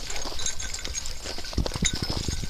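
Dogs wrestling and scrambling in snow: a run of soft thumps and scuffs from paws and bodies, busiest shortly before the end, over a low rumble on the microphone.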